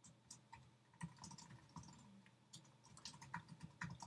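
Faint, irregular clicking of computer keyboard keys as a short line of text is typed.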